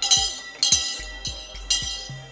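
A school handbell rung by hand, clanging several times about half a second apart, to signal closing time. A low repeating beat runs underneath.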